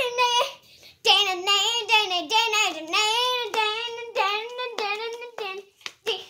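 A young boy singing in a high voice without accompaniment: a short phrase that breaks off about half a second in, then a longer line with a wavering, sliding pitch from about a second in until just before the end.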